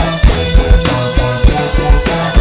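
Live rock band playing: drum kit keeping a fast, steady beat under electric guitars, bass and saxophone, with one note held through.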